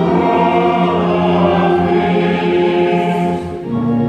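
Mixed choir with orchestra singing and playing a sacred mass setting in sustained chords. About three and a half seconds in the chord ends with a brief dip and a new, lower held chord begins.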